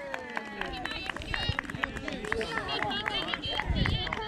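Several voices shouting and cheering over one another, high-pitched and without clear words, in celebration of a goal just scored.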